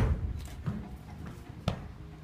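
Kung fu students moving through a form: a heavy thump of feet landing in a low stance at the start, a softer thump of a step on the mat, and a sharp smack near the end.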